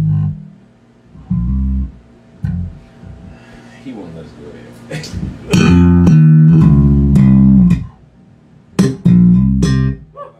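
Amplified bass notes played in short phrases: two brief ones early, a longer run of about two seconds in the middle, and another short phrase near the end.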